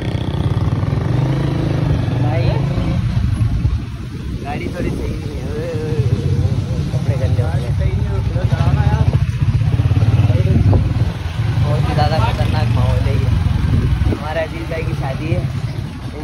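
A loud, uneven low rumble, with voices talking faintly over it, clearer near the end.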